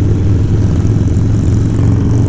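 Harley-Davidson Dyna's V-twin engine and exhaust running at a steady cruise, a low, even rumble, mixed with wind rushing over a body-mounted camera.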